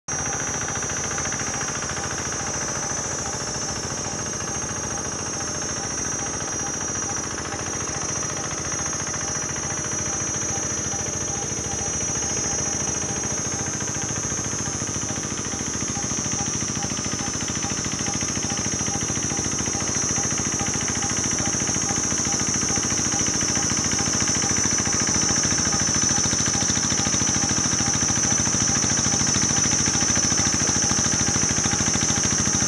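Single-cylinder diesel engine of a two-wheel hand tractor running under steady load with a rapid knocking chug as it drags a leveling sled through a muddy rice paddy. It grows slowly louder over the second half as it comes closer. A steady high-pitched whine sits above it.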